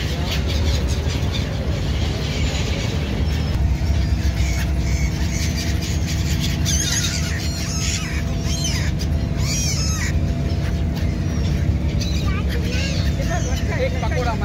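A flock of black-headed gulls calling in short, repeated cries as they swoop in on food held out by hand, the calls coming thickest from about halfway through and again near the end. A steady low rumble runs underneath.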